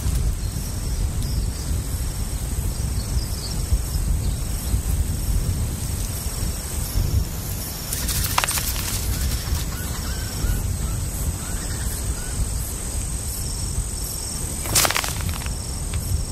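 Faint, short, high bird calls repeating over a steady low outdoor rumble, with two brief sharp noises, one about halfway through and one near the end.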